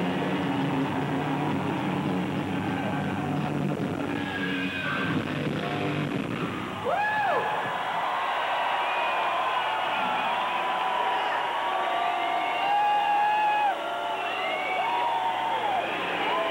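A live hard-rock band's music rings on for about the first six seconds, then stops. A large concert crowd then cheers, whooping and yelling.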